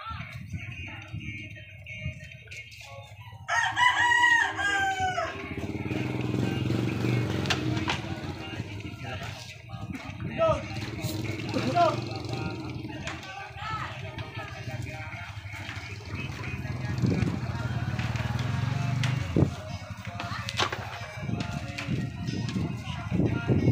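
A rooster crows once, about three and a half seconds in, one long call that falls in pitch at the end. Low voices murmur throughout.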